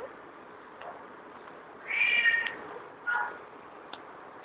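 Domestic cat meowing twice: a longer, high call about halfway through, then a shorter, lower one that falls in pitch, from a cat its owner calls angry.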